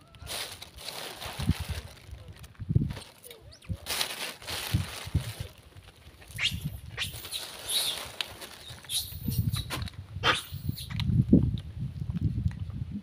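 Long-tailed macaques in a feeding troop giving short, sharp, high-pitched squeals and shrieks, most of them in the second half, over rustling and a low rumble on the microphone.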